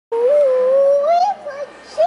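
A young girl's long, drawn-out "oooh", held on one pitch for about a second and rising at the end before breaking off.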